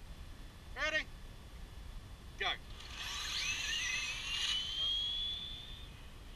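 Electric RC drag car launching and accelerating away down the strip: a thin motor whine rising steadily in pitch over a rushing hiss, starting about halfway through and fading near the end. Two short calls come earlier, a second and a half apart.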